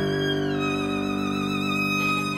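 Classical violin playing a slow, sustained melody with vibrato. About half a second in, the note glides down to a lower one, over steady held lower notes.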